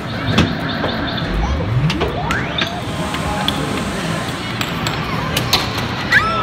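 Indoor arcade din: electronic game-machine sounds and music, with a rising electronic sweep about two seconds in, over steady background chatter and scattered sharp clicks.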